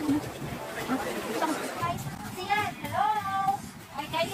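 Voices outdoors, with a child's high-pitched voice calling out in drawn-out tones from about two and a half seconds in.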